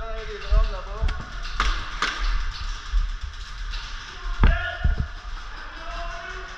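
Scattered sharp snaps of airsoft guns firing: single shots about a second apart, then a quick cluster of three about four and a half seconds in.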